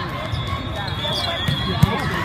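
A volleyball being played in a large indoor hall: two sharp hits of the ball, the louder one near the end, over steady chatter from spectators and players.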